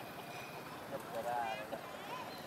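A macaque gives a short, wavering call about a second in, over steady background noise.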